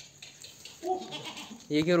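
A goat bleating once, about a second in.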